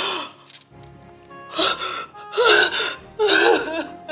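A woman crying: three loud gasping sobs in the second half, over background music with sustained notes.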